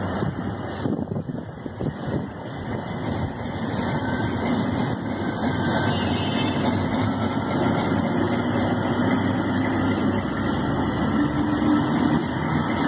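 DF7G-C diesel shunting locomotive running and drawing closer along the track, its engine hum growing louder from a few seconds in.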